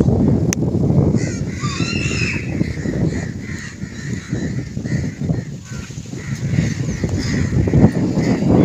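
Birds calling again and again, about two short calls a second towards the end, over a low, gusty rumble of wind on the microphone.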